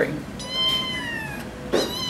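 A domestic cat meowing: one long, high meow about half a second in that drops slightly in pitch, and a second meow starting near the end.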